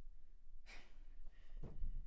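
A woman sighing: a breathy exhale about two-thirds of a second in, then a second, shorter breath near the end.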